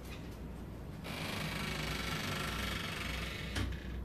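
A steady hiss for a couple of seconds, cut off by one sharp click as the room door shuts and latches near the end.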